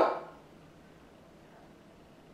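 Quiet room tone with no distinct sound, after the last spoken word fades out at the start.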